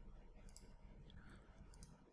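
Near silence with a few faint computer mouse clicks, a pair about half a second in and another pair near the end.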